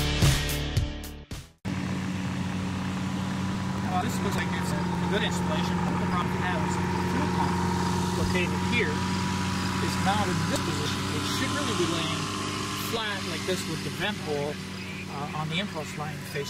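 Music ending about a second and a half in, then a steady engine drone with people talking in the background.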